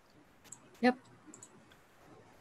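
A few faint computer mouse clicks, one about half a second in and two close together a little after a second, with a short spoken "yep" between them.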